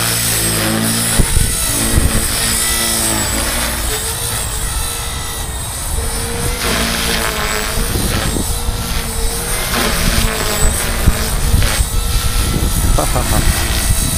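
450-size RC helicopter flying and manoeuvring, its rotor and motor whine wavering up and down in pitch, over a steady low rumble. A short laugh near the end.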